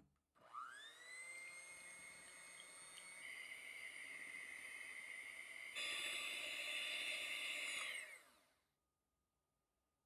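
Electric hand mixer whipping egg white and sugar into meringue. The motor spins up to a steady high whine, runs louder from about six seconds in, then winds down and stops shortly before the end.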